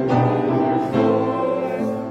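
Church music: voices singing together in a hymn or sung part of the liturgy, with instrumental accompaniment and chords changing about once a second.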